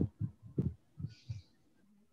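A series of low, muffled thumps, about five in two seconds at uneven spacing, picked up over a video-call microphone.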